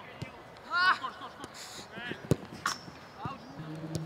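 Short shouts from footballers calling during a passing drill, with several sharp thuds of a football being kicked, the loudest a little over two seconds in.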